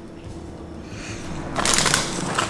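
Faint steady room hum, then a short crinkling, rustling noise near the end as food or takeout packaging is handled on the table.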